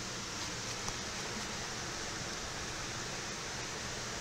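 Steady, even rushing hiss with no distinct events or changes.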